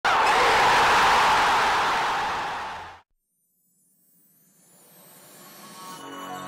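Intro sound effect: a loud rushing noise that fades over about three seconds and cuts off suddenly, then after a brief silence a faint swell rising toward the start of the music.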